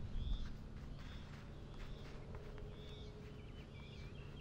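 Soft, faint taps of feet on a soccer ball being dribbled across grass. Short high bird chirps come about once a second, over a low wind rumble that is loudest in the first half-second.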